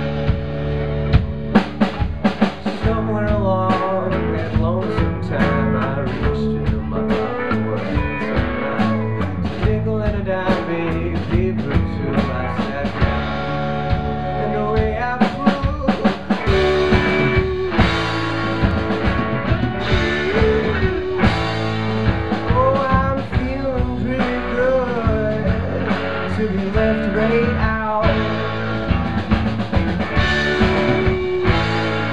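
Live rock band playing an instrumental passage: electric guitars over a drum kit, with a lead line that bends and slides in pitch.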